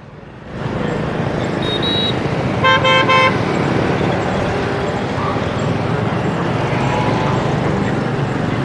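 Steady road traffic noise from the moving vehicle's ride. About three seconds in, a vehicle horn gives a quick stutter of toots, just after a brief high beep.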